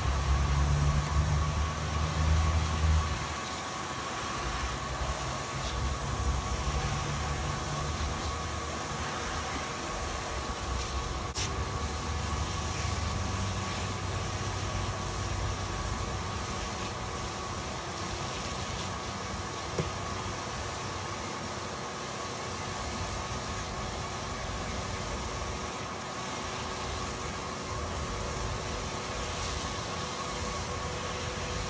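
Steady hiss of water spraying from a hose nozzle onto a gold recovery machine's hopper screen, washing sand down into it, over a faint steady hum from the machine's water system. A louder low rumble sits under it for the first three seconds.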